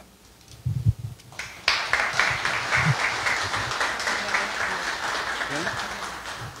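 Audience applauding, starting about a second and a half in and fading slightly near the end, after a couple of low thumps in the opening second.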